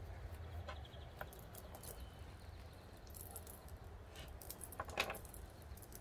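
Faint rustling and small clicks of hands working a jute rope back around the rim of a craft board, over a low steady hum, with one louder rustle about five seconds in.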